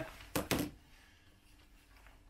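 Two quick knocks, a fraction of a second apart, as a handheld plastic infrared thermometer and a plastic bottle are handled on a wooden cabinet top.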